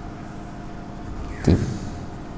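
Steady low background hum with a few faint constant tones, and a single short spoken syllable about a second and a half in.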